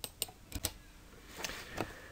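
Faint computer clicks as the presentation is advanced to the next slide: a quick run of about four sharp clicks in the first second, then two softer, noisier taps near the end.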